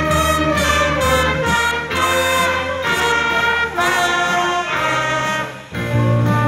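Student band playing, trumpets carrying a melody in held notes that change about twice a second over low bass notes. The music dips briefly near the end, then the band comes back in on a low held chord.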